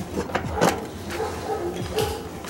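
Motorcycle seat being pulled back and up off its frame: a few short knocks and clicks as the seat comes free of its mounts.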